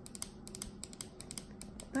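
Irregular light clicking, about six small, sharp clicks a second.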